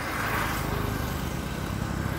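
Engine of a road vehicle passing close by: a steady low drone that grows a little louder near the end.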